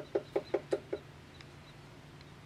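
Acorn woodpecker tapping on wood: a quick, even run of about seven low knocks, about five a second, stopping about a second in.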